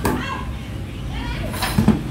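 Plastic-bodied cordless power tools knocking on a tabletop as they are picked up and set down, a sharp knock at the start and a few more near the end, over a steady low hum and distant voices.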